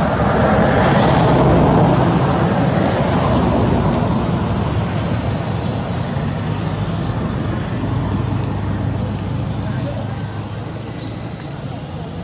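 Road traffic noise with indistinct voices mixed in, a steady rumble that slowly fades.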